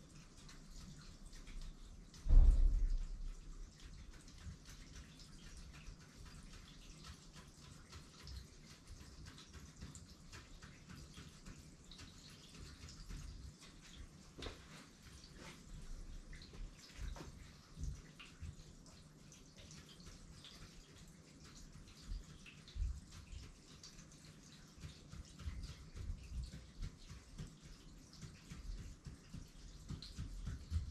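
Faint, irregular taps and rubbing as a small ink tool is pressed onto paper laid on a board, in a quiet small room. A single loud low thump comes about two seconds in, and the low knocks grow more frequent near the end.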